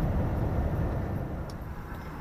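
Flatbed lorry driving, heard from inside the cab: a steady low engine and road rumble that drops off somewhat in the second half.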